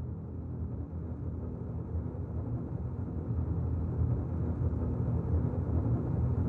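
Low rumbling sound-design drone that swells steadily louder, a tension build in a film soundtrack.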